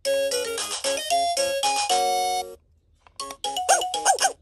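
VTech Rattle and Sing Puppy baby toy playing a short electronic jingle: a quick run of beeping notes ending on a held chord, cut off about two and a half seconds in. After a short gap, the toy's recorded voice starts up near the end.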